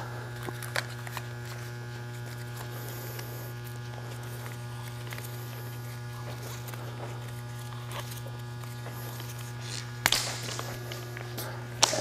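Tape being wrapped around a push-rod coupling: faint handling clicks, then a short burst of noise about ten seconds in as tape is pulled off the roll. A steady low hum runs underneath throughout.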